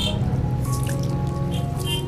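Background music with a steady low hum, over water splashing and dripping as it is poured from a plastic scoop over a person being bathed.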